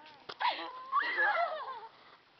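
A brief knock, then two high-pitched vocal cries: a short one, and a longer one that rises and wavers for nearly a second.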